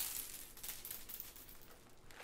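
Coffee beans spilling and scattering on a hard kitchen counter, a patter of small clicks that is densest at first and thins out and fades.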